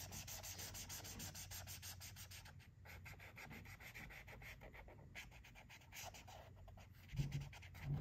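Marker scribbling back and forth on paper, colouring in a square: a faint, quick run of even, scratchy strokes.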